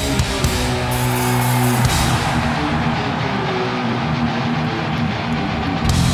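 Live heavy metal band playing: distorted electric guitars, bass and drum kit. A low chord rings out for about the first two seconds, then the playing turns busier, and the band hits harder with cymbals near the end.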